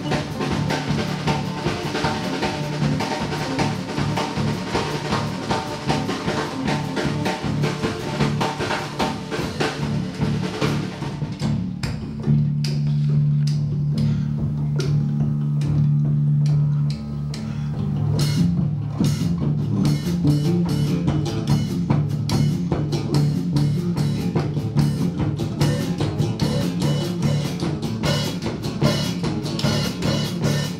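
Live band music: a drum kit and acoustic guitars playing a busy rhythm, with a low drone held for about five seconds in the middle.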